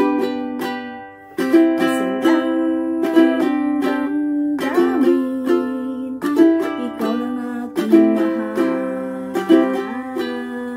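Ukulele strummed in a steady rhythm of chords. About a second in, one chord is left to ring and fade before the strumming starts again.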